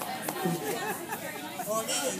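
Background chatter: several people talking at once, no single voice standing out.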